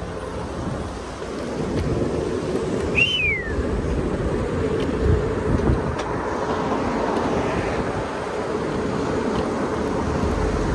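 Wind rushing over the microphone with low tyre rumble on asphalt from a Segway Ninebot ES4 electric scooter in motion, growing louder after about a second and a half as it picks up speed. A short high squeak falling in pitch sounds about three seconds in.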